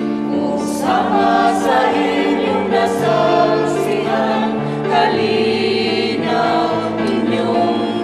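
Church choir singing a hymn over sustained instrumental chords: the closing hymn of a Catholic Mass.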